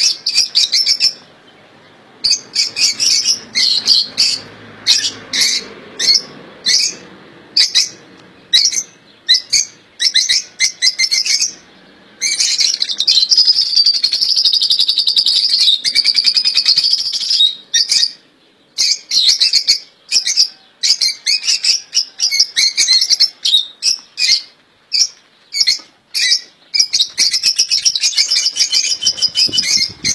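Caged finches chirping and singing: rapid runs of short, high-pitched chirps, with a longer unbroken stretch of song in the middle.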